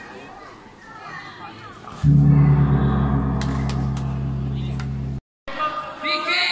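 A gong struck once about two seconds in, with a low, steady ringing hum that fades slowly and cuts off abruptly about three seconds later, after faint crowd voices. In a silat tanding bout, the gong signals the start or end of a round.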